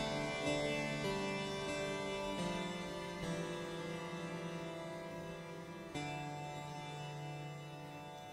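A plucked-sounding instrument playing sustained, smeared notes through the Phonolyth Cascade diffusion reverb with high feedback, while the reverb's loop delay time is turned up; the notes change about a second in, again near two and a half seconds, and again about six seconds in.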